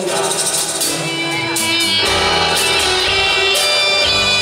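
A live rock band plays a passage between sung lines, with held notes over steady cymbal or tambourine hits. Low bass notes come in about halfway through.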